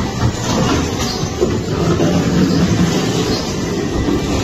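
Loud, steady rumble of a dark-ride vehicle running along its track.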